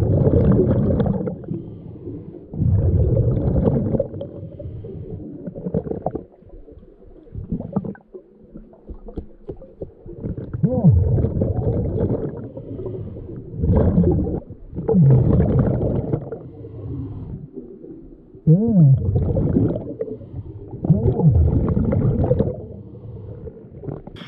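Scuba regulator breathing heard underwater: a diver's breaths come in loud bursts every few seconds, with exhaled bubbles gurgling and rumbling and the regulator giving short wavering tones.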